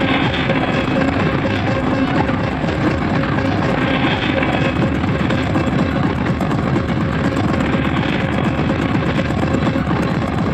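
Industrial hardcore electronic track: a fast, dense drum pattern under steady droning tones.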